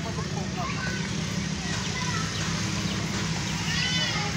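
Outdoor park background: a steady low hum, with faint distant voices of children at play and a short high call near the end.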